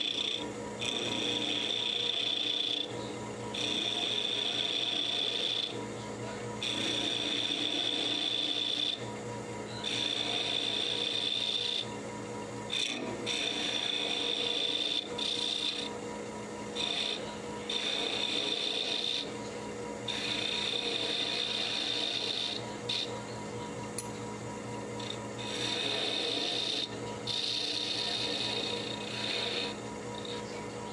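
Wood lathe running with a steady hum while a gouge cuts a spinning half-inch walnut blank down to a round dowel. The cutting comes in repeated passes of a second or two, with short breaks between them.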